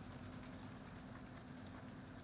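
Faint sloshing and patter of water and dissolving reagent in a capped plastic sample bottle being shaken by hand to mix in Colilert-18 enzyme, over a steady low hum.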